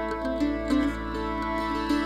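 A bluegrass band playing an instrumental passage, with a bowed fiddle, acoustic guitars, a mandolin and an upright bass.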